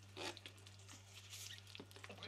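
Faint wet scraping and soft plops as thick chili seasoning paste, with carrot and spring onion strips, is scraped from a glass bowl with a spatula onto cabbage, over a low steady hum.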